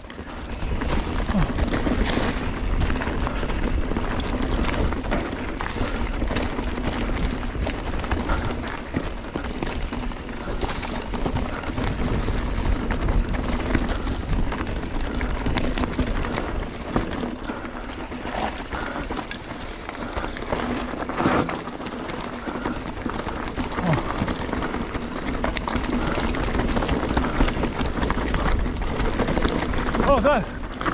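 A Giant Trance 3 full-suspension mountain bike riding a dirt forest trail, heard from a camera mounted on the rider: a continuous rush of tyre and wind noise, with many small clicks and rattles from the bike over the rough ground.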